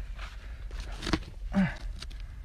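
Screwdriver scraping and prying in packed soil and rock around a buried old glass bottle: a few scattered scrapes and clicks, the sharpest a little after the middle.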